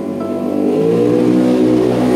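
Backing music for a sung pop ballad with a woman's voice. About halfway in, her voice slides up into a long held note.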